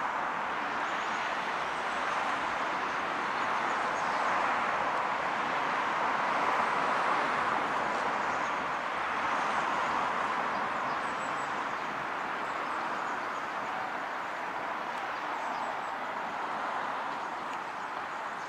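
A large flock of common cranes calling in flight, many overlapping calls blending into one continuous chorus that swells a little in the middle.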